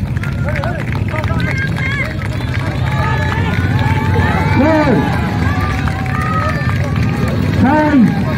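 Royal Enfield single-cylinder motorcycle engines running with a steady low hum as the bikes come slowly past. Several people's voices talk and call out over the engines throughout.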